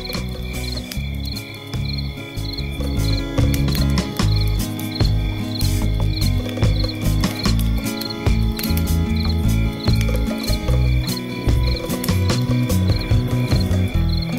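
Crickets chirping in a steady, high pulsing rhythm, about two to three chirps a second, over louder background music with a heavy bass line.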